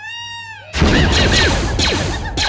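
A single wailing creature cry that rises and falls, then, about three-quarters of a second in, a sudden loud burst of many overlapping squealing, chattering Ewok cries over a low rumble.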